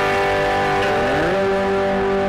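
Guitar intro music with sustained chords; about a second in, a low note slides up in pitch and is then held.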